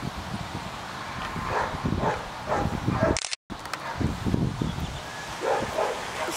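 A camera taking a still photo while it records: a short high click about three seconds in, then the sound cuts out for a moment. Under it, low irregular crunching from a miniature pony eating feed from a plastic bucket.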